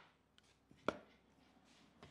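A single sharp click about a second in, with two fainter ticks just before it, over a faint workshop hiss: small handling sounds of a metal mitre gauge against a plywood guide on a saw table.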